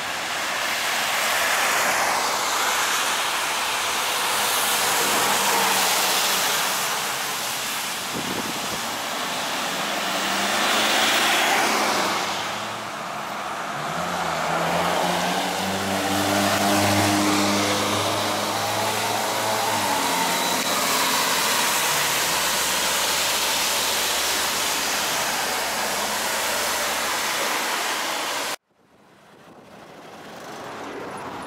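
Road traffic on a wet street, with a rushing tyre hiss, then a trolleybus passing close, its electric traction drive humming and giving a rising electric whine as it pulls away. The sound cuts off abruptly near the end.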